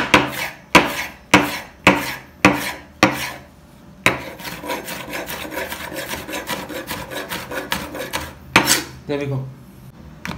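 Chef's knife cutting a tomato on a bamboo cutting board: about six even slicing strokes, each about half a second apart, knocking on the board. Then a dense run of quick chopping for several seconds as the slices are diced, ending with one more knock.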